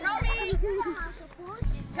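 Young children's voices, several talking and calling out over one another.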